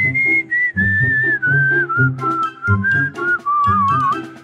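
A whistled tune, one clear tone stepping slowly down in pitch, over a light children's backing track with a repeating bass pattern.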